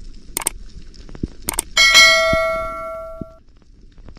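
Subscribe-button animation sound effects: two quick mouse-click pairs, then a notification-bell ding that rings out for about a second and a half.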